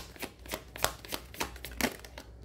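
A tarot deck being shuffled by hand: cards slapping and flicking against one another in a quick, irregular run of sharp clicks.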